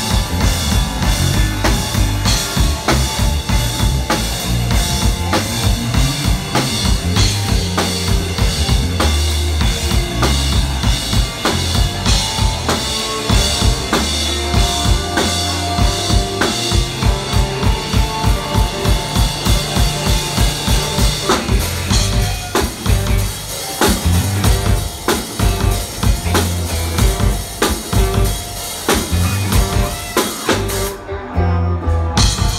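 Live band playing an instrumental jam passage: a drum kit with bass drum and snare keeps a steady beat under electric guitars and bass guitar. The drumming thins out about two-thirds of the way through.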